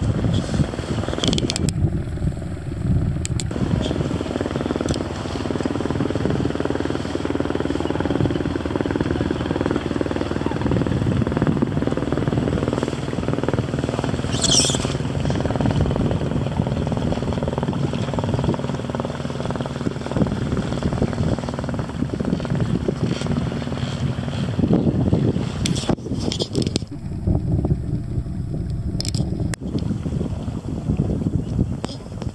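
A motorboat engine running steadily, with wind on the microphone.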